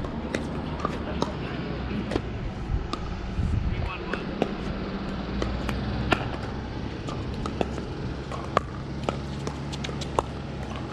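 Sharp, irregular pops of plastic pickleballs being struck by paddles and bouncing on the courts, about one or two a second, over a steady low hum and faint voices.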